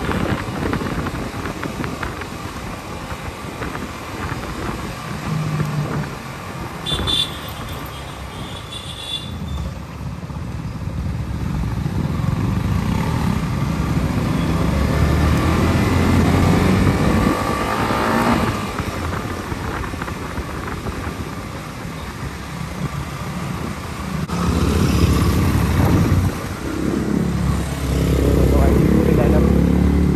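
Yamaha R15's 155 cc single-cylinder engine running as the bike is ridden slowly in traffic, its note rising and falling with the throttle, mixed with the sound of other motorcycles riding alongside.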